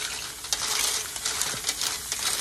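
Clams sizzling on steel grill bars over an oak wood fire, with a steady hiss and short clicks and clinks as metal tongs shift the shells.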